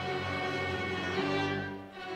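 Orchestral music led by violins, with long held notes that change about halfway through.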